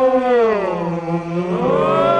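A group of men's voices holds a long cry together. The pitch slides down for about a second, then rises into a higher held chord near the end.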